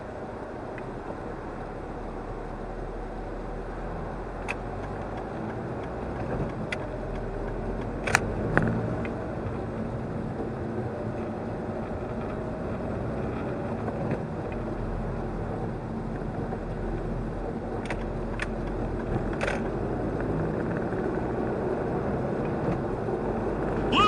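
Engine and tyre noise heard inside a car's cabin as it pulls away in slow traffic, growing gradually louder as the car picks up speed. A few sharp clicks stand out over it, the loudest about eight seconds in.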